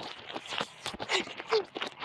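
Footsteps on gravel and grass, heard as irregular short crunches, with a short laugh at the start.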